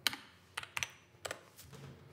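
Computer keyboard keys being typed: about five separate, unevenly spaced key clicks as a short terminal command is typed and entered.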